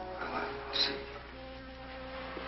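Orchestral film score holding sustained notes, with a short noisy burst cutting in just under a second in.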